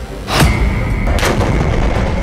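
Explosion sound effect: a boom about half a second in and a second hit a little after a second, over a heavy low rumble, with a steady high ringing tone that starts at the first hit.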